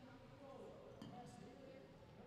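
Near silence in a large gym: faint, distant voices of people talking, with a couple of small ticks about a second in.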